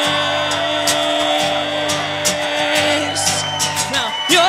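Steel-string acoustic guitar strummed in a steady rhythm under one long held note that ends about three seconds in.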